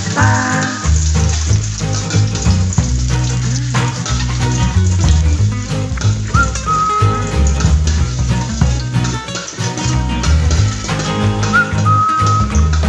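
Background music with a stepped bass line and a high held note that comes twice. Under it, oil sizzles in a steel wok as sliced red chilies and smashed ginger fry.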